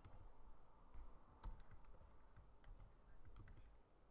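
Faint, irregular clicks of computer keys being typed on, the strongest about a second and a half in, over a quiet room.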